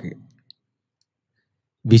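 A brief pause in a man's speech: one faint click about half a second in, then near silence until the voice starts again near the end.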